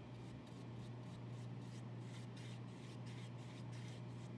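Paintbrush bristles brushing paint onto paper in a series of short, faint scratchy strokes, over a steady low hum.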